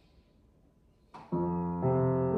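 Grand piano beginning a quiet hymn arrangement: after about a second of near silence, a soft chord sounds about a second and a quarter in and a second chord follows just before the end, both left ringing.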